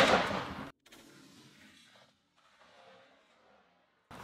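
The dying tail of a Franchi Affinity 3 12-gauge shotgun blast, fading out within the first second, followed by near silence.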